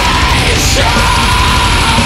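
Live black metal band playing loud, with a vocalist holding a long, high shouted note over distorted electric guitars and drums. The note breaks off briefly about half a second in, then is held again.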